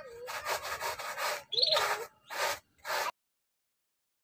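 Rough rasping strokes of hand work on the sculpture's shell, six strokes over about three seconds, with a short wavering squeak-like tone near the middle. The sound cuts off abruptly about three seconds in.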